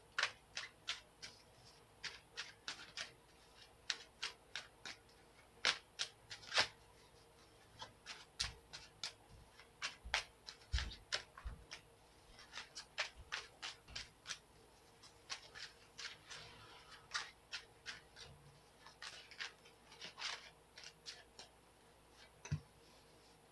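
A deck of tarot cards being shuffled by hand: a run of short, sharp card clicks and snaps, a few per second, with brief pauses and a few soft low thumps midway.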